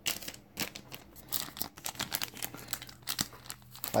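Packaging of a mailed package crinkling and tearing as it is opened, in irregular bursts of crackles.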